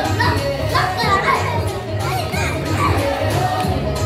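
Background music with a steady bass beat under the chatter of a party crowd and children's voices.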